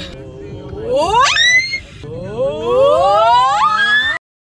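Young women's voices holding a sung note, then sliding up in pitch to a high squeal about a second in, and again from about two seconds in with several voices gliding upward together, like a vocal range contest.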